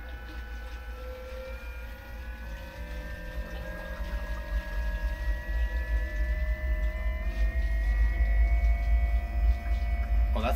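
Hooker seawater pump for the boat's air-conditioning running under a low hum, its whine slowly rising in pitch and getting louder as it moves water through the system.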